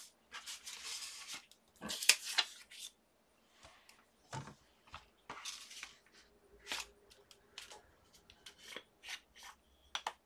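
Hands handling paper and craft tools on a plastic stamping platform: scattered rustles, small taps and clicks, the sharpest about two seconds in.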